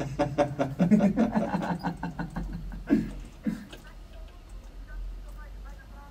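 Talking with some laughter, the voices falling away to faint, quieter speech in the second half.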